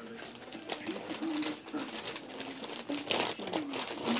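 Light clicks and rattles of small objects being handled by hand, under a low wavering coo-like tone.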